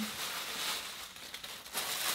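Rustling and crinkling of a plastic shopping bag being picked up and handled.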